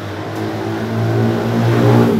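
Large-format inkjet printer running while it prints, a steady mechanical hum that grows louder.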